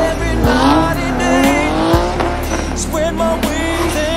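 A car drifting, its engine revving with rising pitch and its tyres squealing, mixed with a bass-heavy music track that has a steady beat.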